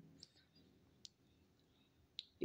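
Near silence: faint room tone, with one short, sharp click about a second in.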